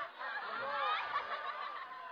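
Audience laughing, many voices at once, dying away over the second half.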